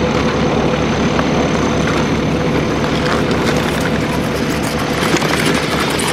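A heavy vehicle's engine idling steadily, with a fine low pulsing and an even hum.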